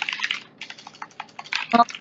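Computer keyboard typing: a fast, irregular run of light key clicks, with a short vocal sound near the end.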